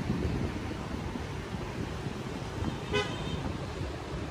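Street ambience with a steady low rumble of road traffic, and one short vehicle-horn toot about three seconds in.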